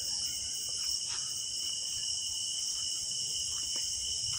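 Steady night chorus of insects such as crickets, a continuous high-pitched trilling, with a few faint clicks.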